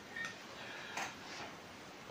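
Quiet room tone with two faint short ticks: a small one just after the start and a sharper click about a second in.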